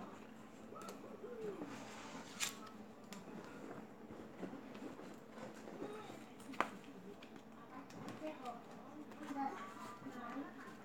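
Items being packed back into a handbag: faint handling and rustling with two sharp clicks, about two and a half seconds in and again at six and a half seconds. Faint voice-like sounds underneath.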